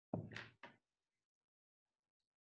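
A sudden loud thump, followed about half a second later by a shorter, quieter knock.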